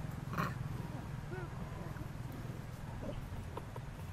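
Macaques giving short, arched calls, with a stronger call about half a second in, over a steady low hum.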